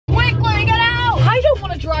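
A young woman's high-pitched voice, a drawn-out cry held for about a second and then wavering, over the steady low hum of a car cabin.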